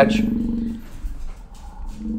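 A man's drawn-out, steady-pitched hesitation sound, an 'uhh' or hum held for about a second at the start and fading, with another beginning near the end.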